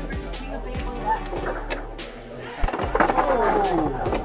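Beyblade X spinning tops clashing and scraping against each other and the walls of a clear plastic stadium, with a louder run of sharp hits about two and a half seconds in as one top is knocked out of the arena for an Over Finish.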